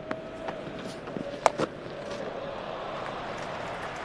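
Murmur of a large cricket crowd, with one sharp crack about one and a half seconds in, a bat striking the ball, and a couple of fainter knocks just before it.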